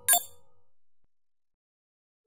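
A single bright metallic ding right at the start, ringing briefly and dying away.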